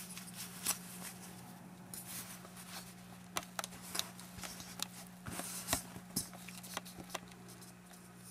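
An original WWII Soviet aluminium canteen handled and slipped out of its cloth cover: fabric rustling with scattered light clicks and knocks of metal, the sharpest knock a little past two-thirds of the way through.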